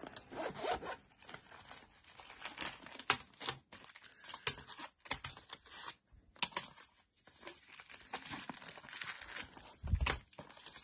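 Zipper of a soft fabric lock-pick case being pulled open in a series of short strokes with brief pauses, with some crinkling of plastic packaging.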